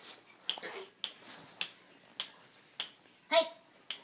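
Five sharp clicks, evenly spaced at about two a second, made by a person calling a small dog back up onto a bed.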